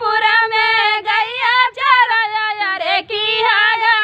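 Two women singing a gaari geet, a traditional North Indian wedding song of teasing insults, unaccompanied, with a melody that bends and slides between held notes.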